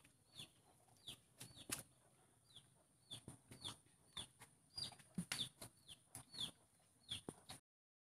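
Faint bird chirps: short high notes, each falling in pitch, repeated about twice a second, with a few soft clicks between them.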